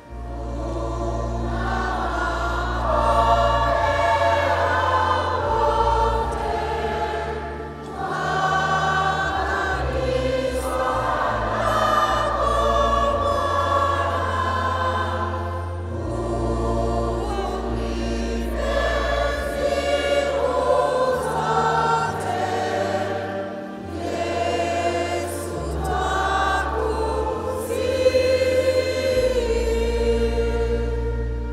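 Choir singing, several voices holding long notes, over sustained bass notes that change every second or few.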